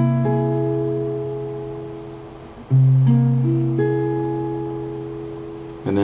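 An acoustic guitar plays a C7♯5 chord fretted 8x899x. The chord is struck just before the start and left to ring and fade, then struck again about two and a half seconds in, with higher notes picked in one after another over the next second before it fades again.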